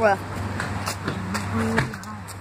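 A child's voice saying a word, then a few sharp clicks and knocks from the phone being handled, with the lens covered.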